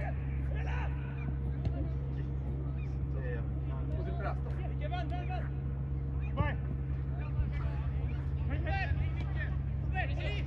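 Football players and onlookers shouting and calling out during play, scattered distant shouts with a sharper call about six seconds in, over a steady low hum.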